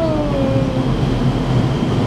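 Vertical wind tunnel running: a steady, loud rush of air and fan noise. A cheer trails off, falling in pitch, within the first second.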